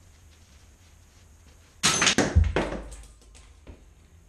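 A tightly compressed Cummins 4BT valve spring shoots out of a valve spring compressor a little under two seconds in: a sudden loud crack and a heavy thunk as it strikes a door, then a few smaller knocks trailing off.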